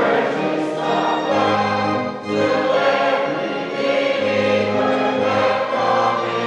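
Church choir singing a slow hymn in long held notes, over a low sustained instrumental bass line.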